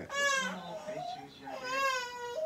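A baby crying, fainter than the men's voices: one cry at the start and a second, rising and falling, about a second and a half in.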